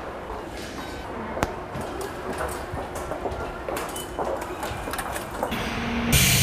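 Automatic ticket gates at a station concourse: gate-mechanism and door-like clicks over a steady background, with one sharp click about one and a half seconds in.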